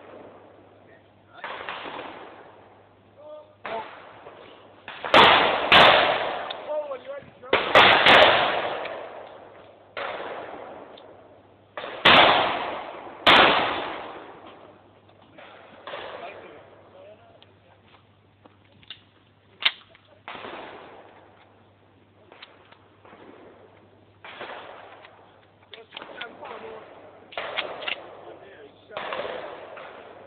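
Shotgun firing at clay targets: several loud reports, some in quick pairs, come between about five and fourteen seconds in, each trailing off in a long echo. Fainter bangs follow in the second half.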